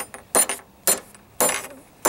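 Spot-welded steel pieces banged hard on a workbench three times, about half a second apart, each knock with a short metallic clink. It is a test of the spot weld's strength, and the weld holds.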